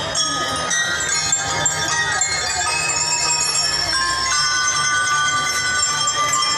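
Drum and lyre band playing: bell lyres ring out a melody of sustained, high metallic notes that change pitch every so often, over a steady low backing from the band.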